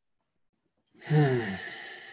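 A man sighing about a second in: a breathy exhale with a short voiced note that falls in pitch, trailing off.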